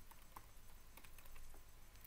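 Faint computer keyboard keystrokes: a handful of scattered key taps over a low background hiss.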